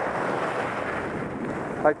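Steady rushing hiss of skis sliding on groomed snow, mixed with wind on a helmet-mounted microphone, during a descent.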